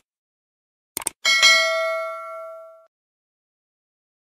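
Subscribe-button animation sound effect: two quick mouse clicks about a second in, followed at once by a bright notification-bell ding that rings out and fades over about a second and a half.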